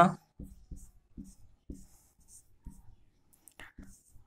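Marker pen being drawn across a whiteboard: a string of short separate strokes and taps, about two a second, with faint scratchy squeaks as a benzene ring is sketched.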